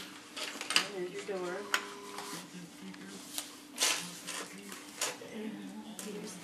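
Plastic Lego bricks clicking and clattering as a child handles them and snaps them onto a baseplate: a handful of separate sharp clicks spread over several seconds.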